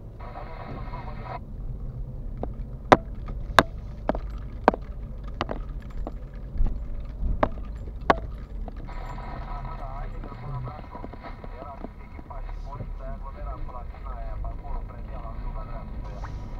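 Car driving slowly, heard from inside the cabin: a steady low engine and road rumble. A run of sharp ticks, roughly two every second and a half, comes between about three and eight seconds in.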